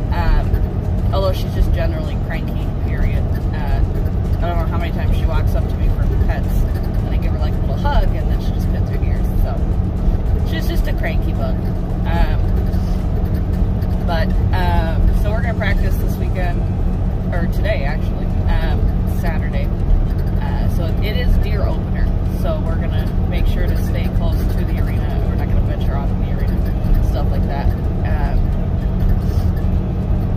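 Steady low road and engine rumble inside a moving car, with music with a singing voice playing over it.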